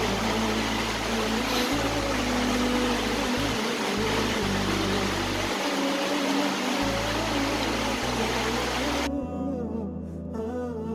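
Background music with a wordless humming voice, laid over a steady loud rushing noise that cuts off suddenly about nine seconds in, leaving only the music.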